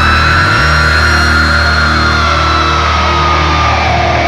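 Heavy metal band's electric guitars ringing out a sustained low chord, which comes in about half a second in, while a high held note slowly slides down in pitch.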